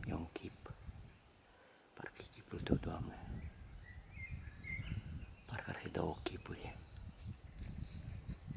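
A man's quiet whispering and breathing, in short broken phrases, with a brief high chirp about four seconds in.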